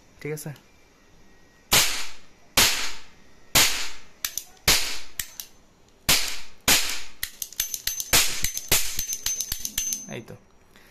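Sound-making metal revolver firing about eight sharp bangs roughly a second apart, with lighter clicks of the hammer and cylinder between shots, more of them near the end.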